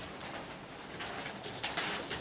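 Sheets of paper being turned and shuffled on a desk, picked up by a handheld microphone: a few short rustles, the loudest near the end.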